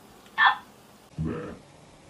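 Necrophonic ghost-box app playing from a phone: two short, choppy voice fragments, a higher-pitched snippet about half a second in and a lower, deeper one just after a second.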